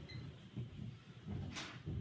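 Faint handling of a plug-in test lead at a 13 A socket outlet, with one short click about one and a half seconds in as the plug is pushed home.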